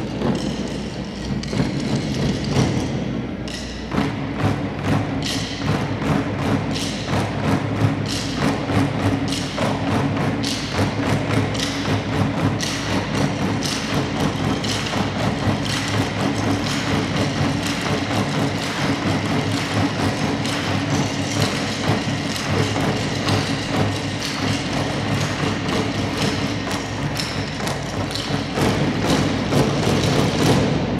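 A percussion group beating drumsticks on upturned plastic trash cans: a steady, driving rhythm of many sharp thuds and clicks.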